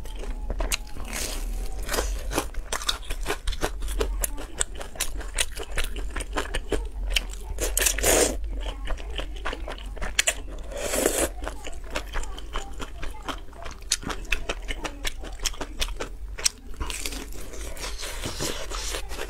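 Close-miked eating sounds: many quick crunches and chewing noises from bites of a breaded fried cutlet, with noodles slurped up about eight and eleven seconds in.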